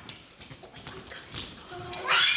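Young children running and jumping across a hard dance-studio floor, many barefoot: a quick, irregular run of footfalls, with faint children's voices.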